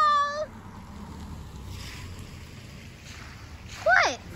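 A high-pitched, wavering squeal from a person's voice that trails off about half a second in, then a few seconds of quiet outdoor background, and near the end a second short cry sliding down in pitch.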